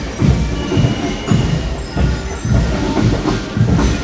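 Marching parade: steady low thumps about three a second, with a few faint thin tones above them.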